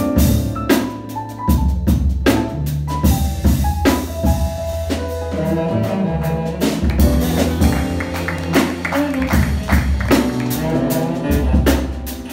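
Acoustic jazz rhythm section of grand piano, upright bass and drum kit playing a tune together, with frequent cymbal and drum strikes over piano chords and bass notes.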